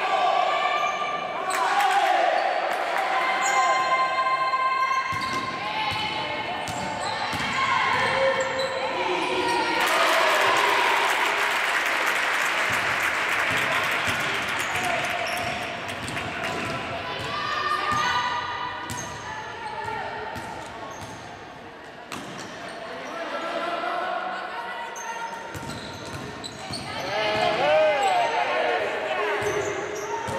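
Basketball bouncing on a gym floor during live play, with players' shouts and sneaker squeaks echoing in a large sports hall. About ten seconds in there are a few seconds of steady crowd-like noise.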